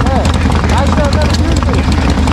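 V-twin chopper engine idling steadily, freshly started with the choke held and still warming up.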